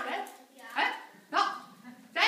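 Two short, sharp bark-like voice calls, the first a little under a second in and the second about a second and a half in.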